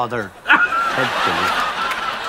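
A man and a woman laughing in short bursts of chuckles and snickers.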